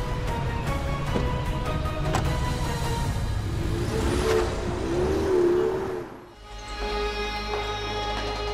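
Background music over a Ford Mustang convertible's engine as the car pulls away. The car sound cuts off abruptly about six seconds in, leaving only the music.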